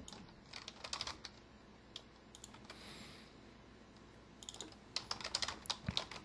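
Faint typing on a computer keyboard: a few short runs of keystrokes with pauses between them, the longest run near the end.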